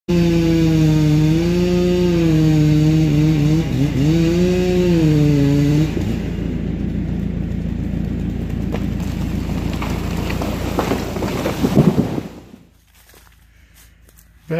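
Chainsaw running at high revs for about six seconds, its pitch wavering and dipping as it works in the cut. This gives way to a rougher, noisier stretch that swells to a peak just before the sound drops away.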